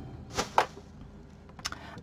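A brief swish of card stock as a folded handmade greeting card is opened and handled, about half a second in, with a faint tick a little later.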